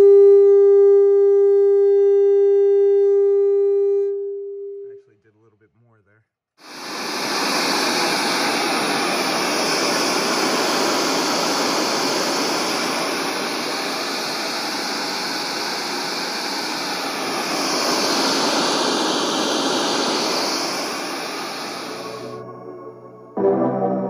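Cicada Audio CH65.2 6.5-inch motorcycle coax horn speaker driven at just under 700 watts RMS, playing a loud, steady 400 Hz test tone with overtones above it for about four seconds. After a short, nearly silent gap, it plays a loud, even rush of noise with slight swells, cut off below about 100 Hz.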